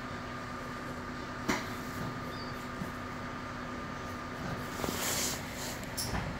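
Inside a Metra Rock Island commuter train car: a steady hum carrying a faint constant tone, a sharp knock about a second and a half in, and a short burst of hiss near the end as the tone cuts off.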